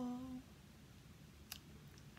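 A woman's voice holding a short, steady hum that ends about half a second in, then quiet room tone with one faint click about a second and a half in.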